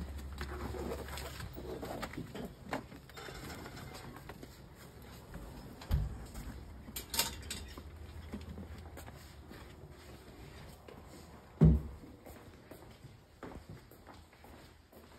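Footsteps and handling noise from people walking while carrying a bundled blanket, with a low rumble at times and one loud thump about twelve seconds in.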